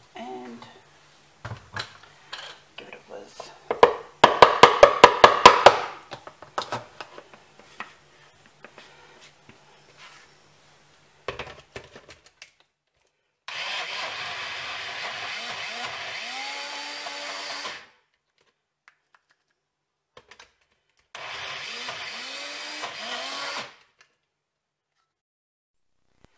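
Knocks and clatter as the blender cup is handled, including a quick run of sharp taps, then a personal bullet-style blender motor runs in two pulses, about four seconds and then about two and a half, spinning up at the start of each, as it blends soaked dates with peanut butter into a thick paste.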